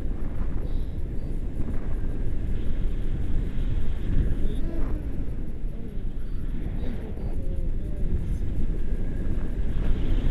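Wind buffeting the microphone of a selfie-stick camera in tandem paraglider flight, a loud, gusty rumble that rises and falls unevenly.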